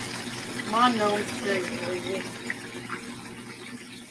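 Brief, indistinct talking in a kitchen: a short spoken phrase about a second in and a few quieter words after it, over a steady rushing hiss.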